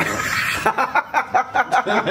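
A man laughing: breathy at first, then a quick run of short "ha" bursts, about six a second.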